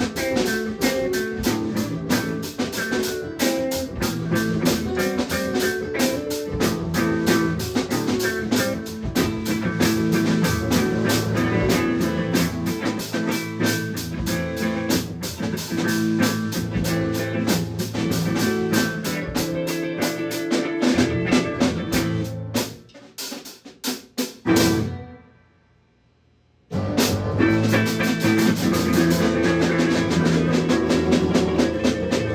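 Live jam-band music: guitars over a drum kit keeping a steady, busy beat. The playing thins out a little past twenty seconds, drops to near silence for about two seconds, then starts again suddenly at full level.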